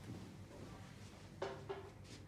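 Tableware clinking: two quick, light clinks about a second and a half in, each with a brief ring, as things are set down on the table.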